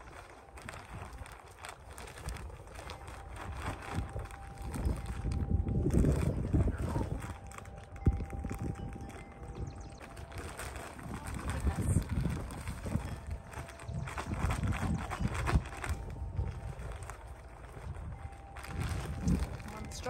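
Potting soil pouring from a plastic bag into a concrete urn planter, the bag crinkling and rustling as it is shaken, in several uneven surges.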